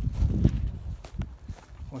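Rustling and handling noise of a fabric pop-up ground blind being moved over dry grass, a low rumble with a few light clicks that fades through the second half.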